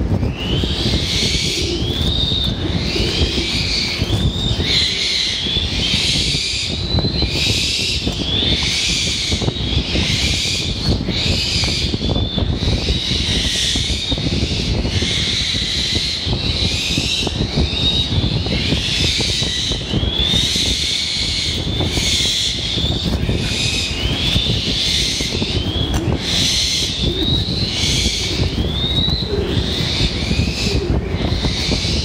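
Young black-winged kites giving high, squealing calls that rise in pitch, one or two a second and often overlapping, typical of hungry young raptors begging for food. A steady low rumble runs underneath.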